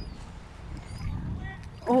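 Low rumbling noise of wind on a phone microphone outdoors, swelling a little mid-way, with a few faint high chirps over it.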